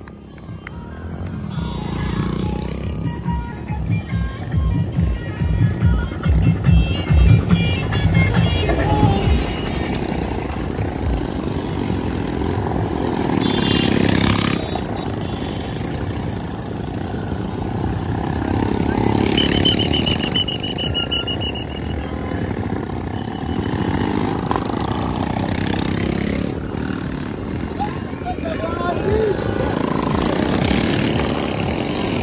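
Motorcycle engines running as bikes pass close by, mixed with loud music and voices, with low pulsing in the first several seconds.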